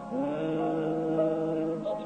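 Congregation singing a slow hymn: one long held chord, then the next chord begins near the end.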